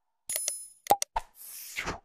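Sound effects for an on-screen subscribe animation. A short high bell ring comes in about a third of a second in, followed by a few sharp mouse-click sounds, then a whoosh that swells near the end.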